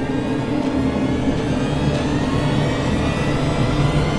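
Low rumbling drone of a horror film score, steady and slowly swelling, with faint high tones gliding upward over it.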